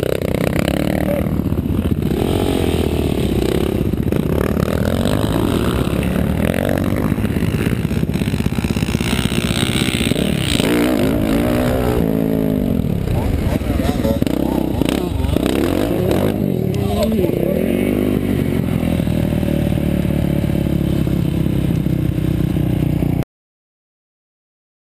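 2010 Yamaha YZ450F four-stroke single-cylinder motocross engine heard from a helmet-mounted camera, revving up and down with the throttle over and over in about one-second rises and falls, with some clattering. The sound cuts off suddenly near the end.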